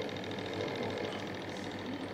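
Steady hum of running laboratory apparatus with a fast, even pulsing, from the aerated algae culture set-up.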